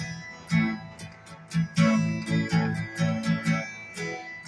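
Steel-string acoustic guitar strummed in a slow, uneven rhythm, each chord ringing between strokes.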